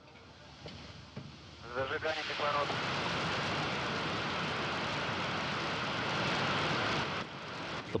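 Soyuz rocket engines running at liftoff: a steady, dense rush of noise that comes in about two seconds in and falls away about a second before the end.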